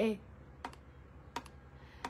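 Two short, sharp clicks at a computer, about 0.7 s apart, over a faint low hum.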